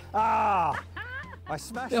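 A man's loud, drawn-out cry that falls in pitch, lasting a little over half a second, followed by quieter talk.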